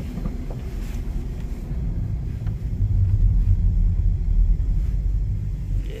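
Low rumble of an OBS Chevy Tahoe's engine and drivetrain heard inside the cabin as the truck pulls into a parking space. It grows louder about three seconds in and eases off near the end.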